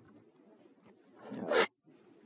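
Faint room tone, then about a second and a half in a short, breathy muttered "no" close to the microphone, rising quickly and cut off sharply.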